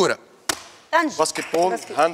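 A hand slaps a game-show buzzer button once, a single sharp knock about half a second in. It is followed by a voice.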